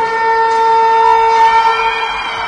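Ice rink goal horn sounding: one loud, steady tone that starts suddenly and holds its pitch, signalling a goal.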